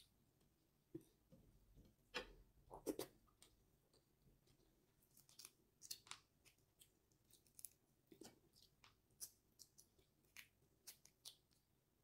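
Faint, irregular crackles and clicks of cooked shrimp shells being cracked and peeled off by hand.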